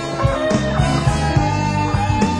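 Live blues band playing a slow blues intro: a lead electric guitar bends a note up and holds it over bass and drums, with a cymbal crash about half a second in.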